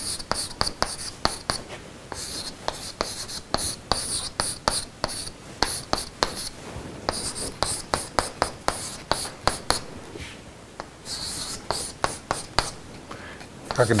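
Chalk writing on a chalkboard: quick taps and scratchy strokes in rapid runs, with a short pause about ten seconds in.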